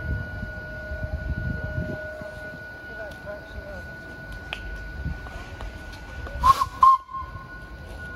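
Narrow-gauge steam locomotive standing, with a thin steady high tone; about six and a half seconds in, a sudden loud burst and a short whistle toot.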